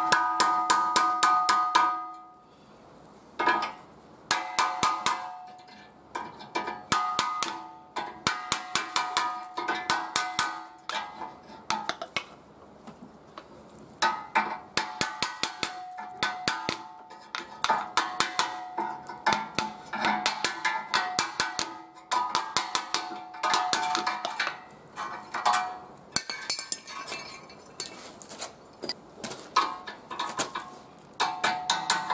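Hand hammer striking a steel chisel against the rusted steel bushing ring on a Volkswagen Polo rear axle beam, in runs of quick, ringing metallic blows with short pauses between them. This is the corroded ring that holds the rubber silent block being chiselled out.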